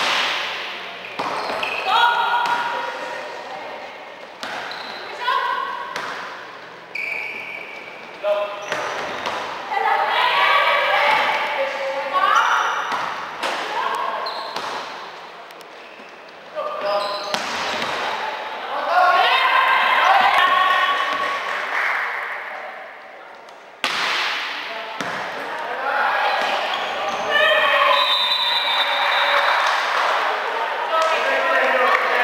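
Women's indoor volleyball in play: sharp ball strikes, with short high-pitched squeaks and players' calls on the court, echoing in a large hall.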